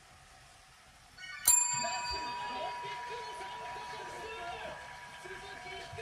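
Chrome desk call bell struck once about a second and a half in: a bright ding that rings on and fades slowly.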